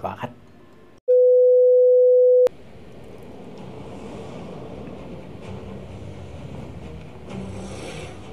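A loud, steady electronic beep at one mid pitch starts about a second in, holds for about a second and a half and cuts off abruptly. The anime episode's soundtrack then begins: a steady atmospheric background with faint music.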